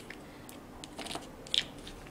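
Plastic screw-top lids being twisted off small gel nail polish pots: a few short plastic clicks and crackles, the sharpest about one and a half seconds in.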